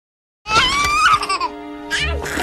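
Silence, then about half a second in a cartoon girl's high-pitched laugh, followed by music starting up.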